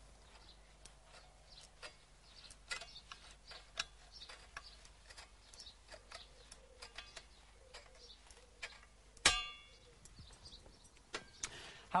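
Kitchen scissors cutting through thin car-body sheet steel, about half a millimetre thick: a string of irregular snipping clicks, with one louder metallic clank and a short ring about nine seconds in.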